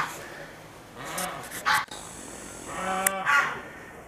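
A woman's soft, sing-song voice is heard twice, brief and wordless, with a few short sharp clicks between.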